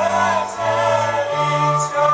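A group of men's and women's voices singing a Slovak folk song together in harmony, holding long notes that step to new pitches every half second or so.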